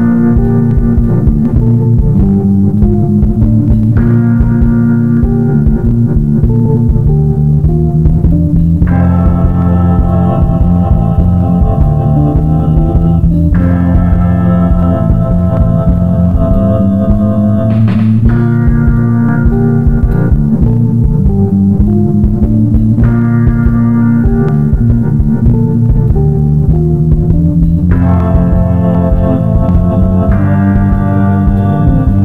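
Instrumental band music with no singing: held organ chords over electric guitar and bass, the chords changing about every four to five seconds over a steady low pulse.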